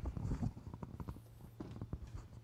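Faint, irregular footsteps and soft knocks from a person moving about a stage.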